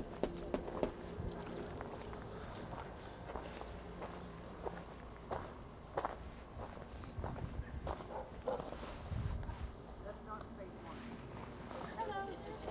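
Footsteps on dirt and gravel: uneven walking steps with scattered light knocks.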